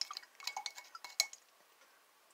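A glass beaker of gold powder in water being handled: several light glass clinks in the first second and a half, one with a short ring.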